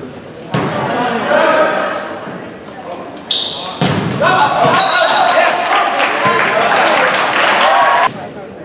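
A volleyball rally in an echoing gym: sharp ball hits about half a second in, twice in quick succession a little past halfway, and once more later, with short high shoe squeaks on the court. Players and spectators shout throughout, swelling into loud cheering over the second half as the point is won.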